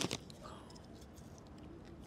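A single short, sharp click, followed by faint outdoor background noise.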